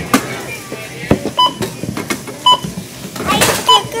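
Checkout barcode scanner beeping three times, about a second apart, as items are scanned, with clatter and rustling of goods being handled between beeps.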